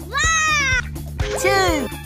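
Only speech and music: a high-pitched cartoon character voice calls out numbers, each word arching up and down in pitch, over children's background music with a steady beat.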